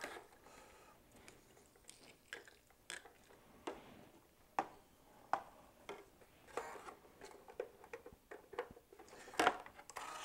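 Scattered light clicks and taps of hands handling a radio-control transmitter and model parts on a hard workbench, the transmitter's switch flipped to set the flaps to the down position. About a dozen separate clicks, the loudest near the end.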